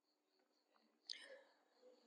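Near silence: faint room tone, with one brief soft breath a little over a second in.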